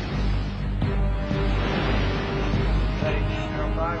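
Dramatic film score music with low sustained notes, held higher notes coming in about a second in, over the rushing of heavy seas breaking against a warship's bow. A man's radio voice begins right at the end.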